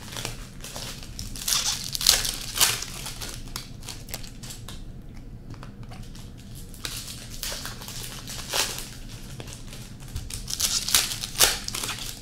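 Trading card pack wrappers crinkling and tearing as packs are opened, in two bouts of sharp rustles, one about two seconds in and one near the end. Cards are handled and shuffled with lighter clicks in between.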